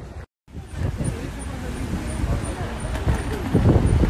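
City street ambience of steady traffic noise with voices mixed in, after a brief dropout shortly after the start.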